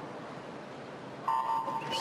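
Electronic start signal of a swimming race: a steady high beep comes in suddenly about a second in and holds for under a second, over low, steady arena background noise.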